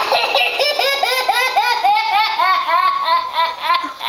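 A small boy laughing hard while being tickled: an unbroken run of quick, high-pitched laughs, several a second.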